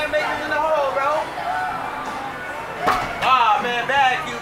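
Voices speaking over background music, with one sharp thump a little before three seconds in.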